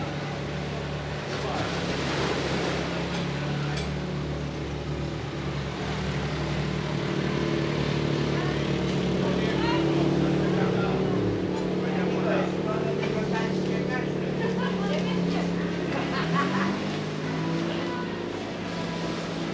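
Street ambience: a steady low engine hum that stops a little after halfway through, under the background chatter of people talking.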